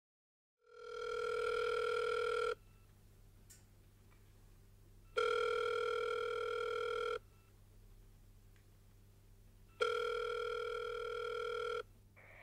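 Telephone ringback tone heard through a phone handset while an outgoing call rings unanswered: three steady rings of about two seconds each, a few seconds apart, the first starting just under a second in.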